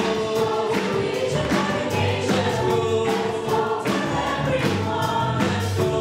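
Live worship band playing an upbeat praise song: guitars and a drum kit keeping a steady beat under several singers and the congregation singing together.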